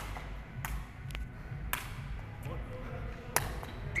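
A plastic sepak takraw ball being kicked and juggled, giving a series of sharp taps at uneven intervals, roughly one every half to one second.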